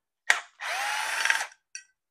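Cordless drill/driver turning a screw in an alternator's end housing: a click, then about a second of steady motor whine that rises slightly in pitch and levels off, then a brief blip near the end.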